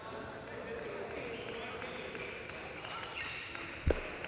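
Table tennis ball in play in a large quiet hall: a serve and a short rally of light ball clicks on bats and table, ending with a low thump near the end.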